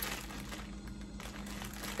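Soft crinkling and rustling of packaging as an item is handled, with a faint steady hum underneath.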